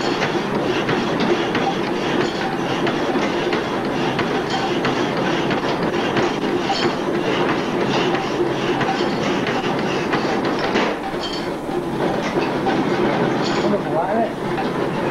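An old power hacksaw running, its reciprocating bow frame making a steady mechanical clatter with a rhythm of repeated clicks, dipping briefly near the end.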